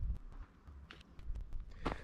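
A few faint, scattered clicks and scuffs of a person moving about on a concrete yard, over a low rumble.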